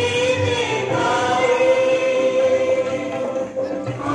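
A group of voices singing a slow song in chorus, holding long notes.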